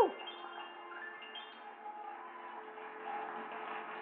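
Music from a television's speaker, recorded in the room: a loud note falls away right at the start, then soft sustained instrumental tones carry on quietly.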